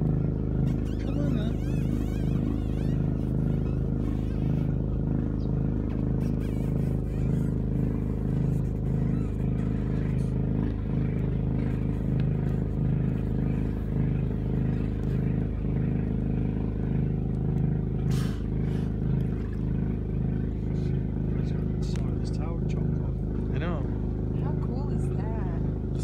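Boat's onboard generator running, a constant hum made of several steady low tones.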